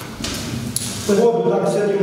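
A man speaking, with his voice coming in about a second in after a brief hiss of noise.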